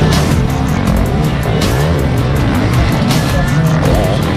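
Enduro motorcycle engines revving up and down as the bikes race, mixed with background music that has a steady beat.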